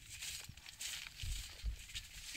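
A horse walking on grass, its hooves making a few soft low thuds in the second half, over a steady hiss of wind on the microphone.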